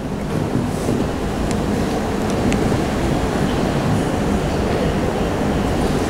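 A steady low rumbling noise, with no speech. It builds slightly over the first second and then holds level, with a few faint ticks.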